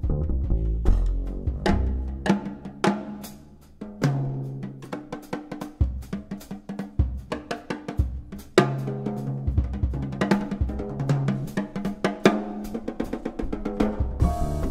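Double bass and jazz drum kit playing together: busy snare, bass drum and cymbal strokes over the double bass's held and walking low notes.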